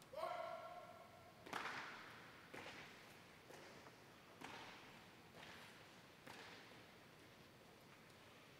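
A drawn-out shouted drill command, then the color guard's marching steps: sharp heel strikes on a hard floor about once a second, echoing in a large hall and growing fainter.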